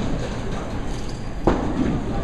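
Bowling alley sound: a steady low rumble of bowling balls rolling on the lanes, with a sharp crash of pins about a second and a half in.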